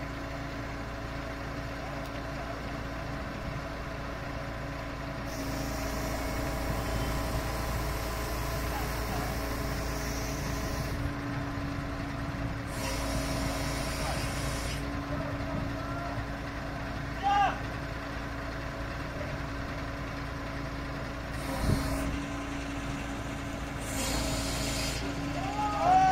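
Truck-mounted crane's diesel engine running steadily while it lowers a load, with several bursts of hissing air, the longest lasting several seconds.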